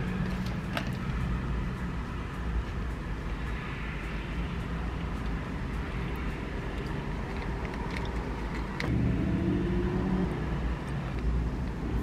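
A car engine idling, a steady low rumble heard from inside the cabin, growing a little louder about nine seconds in.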